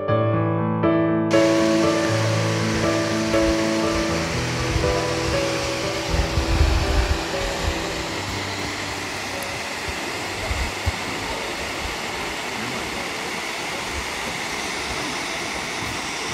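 Soft piano music fades out over the first half while the steady rush of a waterfall comes in about a second in and carries on, with a few low bumps about six to seven seconds in.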